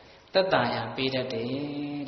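A Buddhist monk's voice chanting in a steady, drawn-out intonation. It starts after a short pause about a third of a second in.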